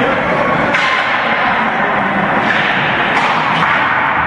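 A few sharp knocks of hockey sticks and pucks on the ice and boards, over loud steady rink noise.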